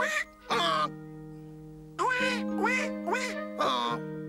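Cartoon ducklings quacking in about six short calls over held background music chords.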